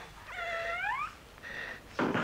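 A cat meowing once, a single cry about two-thirds of a second long that rises in pitch at its end, followed by a fainter brief sound.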